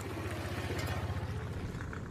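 An engine running: a steady low hum with a fast, even pulse that fades a little near the end.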